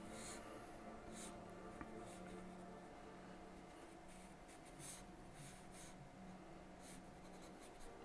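Charcoal pencil drawing on smooth newsprint: several short, faint scratching strokes, heard over a low steady room hum.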